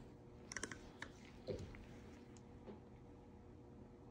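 A few faint clicks and taps as a gloved hand adjusts a microscope's knobs, most of them in the first two seconds.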